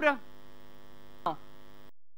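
Steady electrical mains hum on the sound system's feed. A spoken word ends at the very start, a short voice sound comes about a second later, and the audio cuts out to dead silence just before the end.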